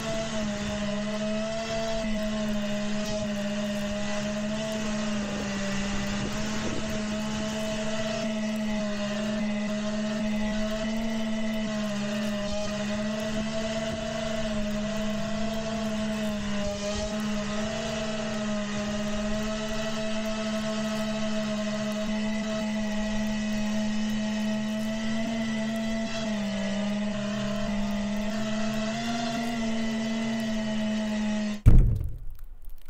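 FPV quadcopter's four motors and propellers humming steadily in slow, low flight, with small shifts in pitch near the end.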